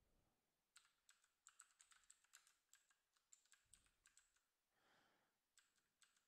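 Faint typing on a computer keyboard: a quick run of keystrokes in the first half, a pause, then a few more keystrokes near the end.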